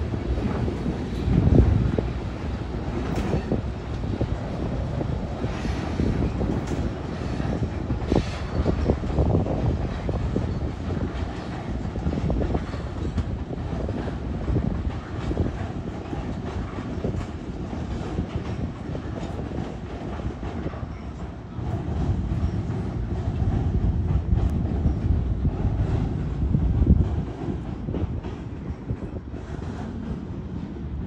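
Freight train's refrigerated boxcars rolling across a river trestle bridge: a continuous low rumble of wheels on rail with scattered clicks over the rail joints, swelling louder a couple of times.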